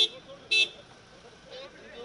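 Car horn honking in two short toots, one at the very start and another about half a second in.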